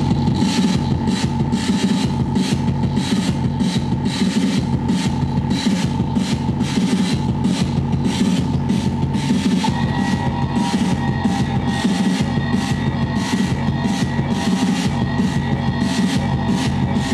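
Live electronic noise music played on tabletop electronics: a fast, steady pulse over a dense low drone and a held tone. About ten seconds in, the tone drops slightly in pitch and a second, higher tone joins.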